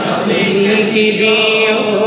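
A man singing a Bengali devotional song in praise of the Prophet Muhammad through microphones, drawing out long, slightly wavering held notes.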